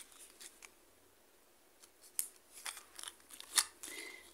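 Packaged earrings being handled: faint rustling of clear plastic bags and cardboard backing cards, with a few short, sharp clicks in the second half.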